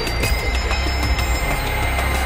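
Television programme's closing music and sound effects: a dense, steady low rumble under a noisy wash with scattered clicks.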